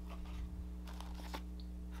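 Faint rustles and light taps of a small white cardboard box being handled as its lid is folded back and a paper instruction card is lifted out, a few soft sounds spread over the two seconds, over a steady low hum.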